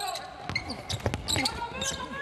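Basketball dribbled on a hardwood court: a few sharp bounces, with brief shouts from players on court in a near-empty arena.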